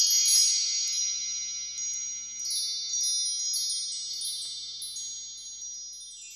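Shimmering chime sound effect: bright high ringing tones that hold and overlap, sprinkled with scattered tinkling strikes, slowly fading out.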